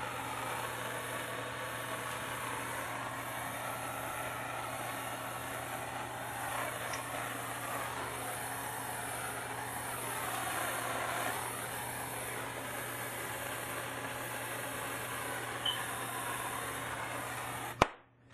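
Handheld gas torch burning with a steady hiss as it heats a copper pipe joint for soldering. It cuts off suddenly with a click just before the end as the torch is shut off.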